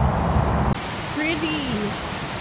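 Low road rumble of a moving car that cuts off abruptly under a second in, giving way to the steady rushing of a nearby waterfall, with a brief voice over it.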